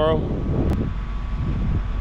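Wind rumbling on the microphone, with a single sharp click a little under a second in.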